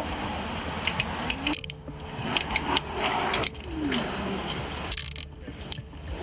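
Metal handcuffs clicking and clinking in short, scattered taps as they are worked at a stretcher's metal rail.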